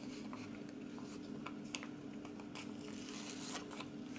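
Paper sticker sheets being handled: faint rustles and small clicks, with a longer rasp of a sticker peeling off its backing about three seconds in.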